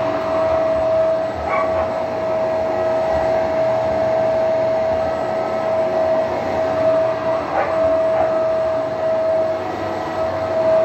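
Upright carpet cleaner running on carpet, its motor giving a steady high whine over a rushing suction noise as it is pushed back and forth.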